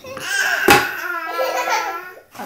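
A baby laughing, with a sharp knock a little under a second in and the laugh drawn out into one long held note near the end.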